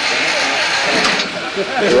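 A canoe hull sliding and scraping over a car's roof rack as the loader sets it down: a steady rasping hiss that cuts off near the end. Voices murmur underneath.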